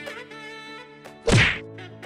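A single loud whack sound effect about a second in, over background jazz music with saxophone.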